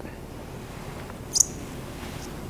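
A plastic applicator bottle gives one brief, sharp, high-pitched squirt about one and a half seconds in, as perm neutralizer is squeezed out onto the rods. Otherwise only quiet room tone.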